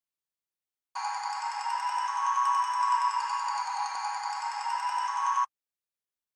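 A phone beat-pad app's mallet loop: a steady, bell-like high chord that starts about a second in and cuts off abruptly near the end.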